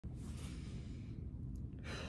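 A woman breathing out in a long audible sigh, with another breath beginning near the end, over a low steady rumble.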